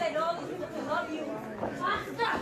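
Scattered ringside voices shouting and chattering at a wrestling show, in short broken calls.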